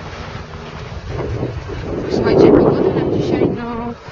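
Wind buffeting the microphone, swelling to its loudest about two seconds in, with a short pitched voice sound near the end.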